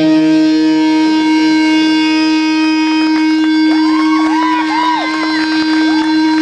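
Distorted electric guitars of a live metal band holding one long droning note. A little past halfway, a guitar squeals up and down in pitch several times over it.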